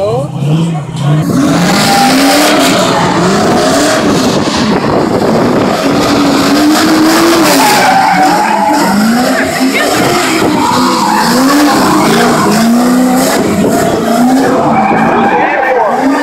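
A car doing donuts: the engine revs up and down again and again as it circles, over continuous tire squeal and skidding.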